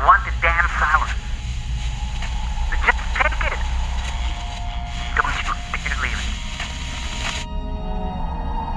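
Speech over a steady radio hiss with music underneath. The hiss cuts off shortly before the end, leaving the music.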